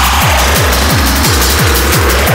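Techno track with a kick drum on every beat, about two and a half a second, each kick dropping in pitch. Over it a synth line slides down in pitch and another rises near the end.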